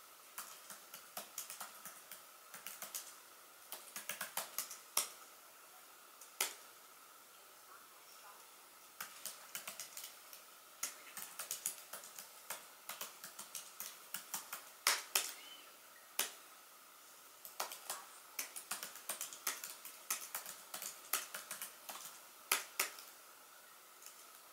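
Typing on a laptop keyboard: quick runs of key clicks in bursts, with short pauses between words and a longer pause of a couple of seconds near the middle.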